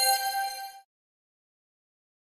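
Closing notes of a short chiming logo jingle, bell-like tones ringing together and cutting off abruptly under a second in, followed by complete silence.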